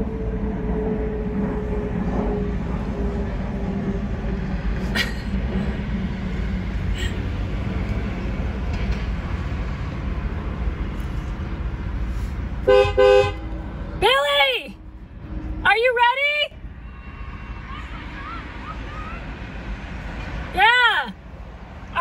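A car horn honks once, a short steady blast about two-thirds of the way in, to get someone's attention. Before it there is a steady rumble of road traffic.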